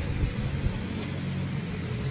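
A steady low machine hum with no change over the two seconds.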